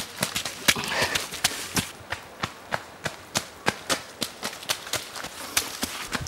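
Running footsteps of trail runners on a dirt track: sharp, even steps at about three a second.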